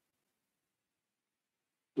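Near silence, until a man's voice starts right at the end.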